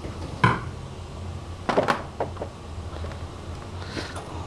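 Light knocks and clatter of a metal candy press, rubber mold and metal tray as maple sugar candies are pressed out of the mold: one sharper knock about half a second in, then a cluster of smaller knocks around two seconds.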